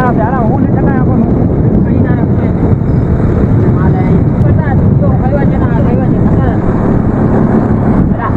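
Steady, loud low rumble of a fishing boat at sea, with men's voices calling over it now and then.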